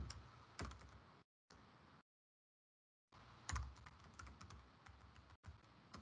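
Faint computer keyboard typing: scattered keystrokes, a short run about half a second in and another about three and a half seconds in, with stretches of dead silence between.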